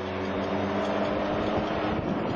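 Vehicle engine running steadily under heavy road and wind noise, heard from on board the moving vehicle.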